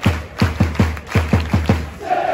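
Football crowd clapping in unison, a quick steady rhythm of about five loud claps a second, close to the microphone.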